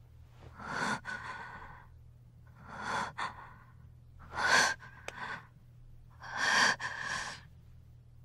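A woman breathing heavily in distress: four loud breaths about two seconds apart, over a faint steady low hum.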